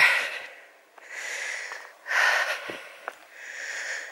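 A person breathing hard close to the microphone while walking uphill, about one breath a second, with a couple of faint clicks.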